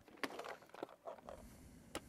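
Faint scattered clicks and rustling from cables and connectors being handled.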